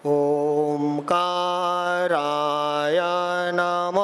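A man chanting Sanskrit verses in a slow, melodic recitation, holding each syllable on a steady pitch for about a second before stepping to the next.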